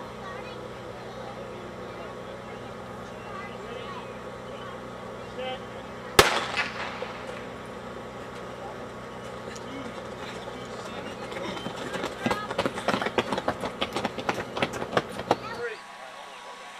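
A single sharp crack about six seconds in, the start signal for a sprint, over a steady background hum. Near the end comes a rapid, irregular run of knocks and crackles that cuts off suddenly.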